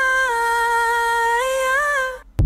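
A single sung vocal note held for the whole two seconds, high and slightly wavering, stepping up a little near the end: a held note of a slow pop ballad.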